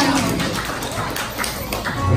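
Scattered hand clapping from a small group of guests, with murmured voices behind it.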